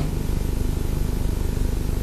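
A steady low hum with an even hiss over it and no speech: the broadcast recording's background noise.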